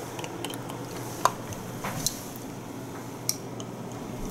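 A few light clicks and taps from a plastic sauce bottle and plastic measuring cup being handled while thick sweet chili sauce is poured, the sharpest a little over a second in.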